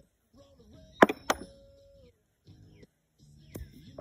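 Metal washers landing on a carpeted washer-toss board with a wooden cup: two sharp clanks about a second in, the second followed by a brief metallic ring, then another sharp clack near the end.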